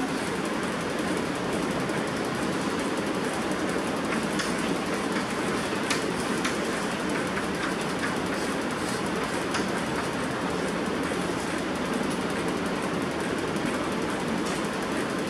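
Chalk writing on a blackboard, heard as a few faint taps through the middle, over a steady hiss of room noise that is the loudest thing throughout.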